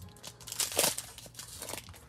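Foil wrapper of a Magic: The Gathering booster pack crinkling and tearing as it is ripped open by hand, with the loudest rip a little under a second in.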